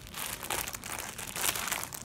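Clear plastic garment bag crinkling and crackling as it is handled and turned over, a dense run of crackles.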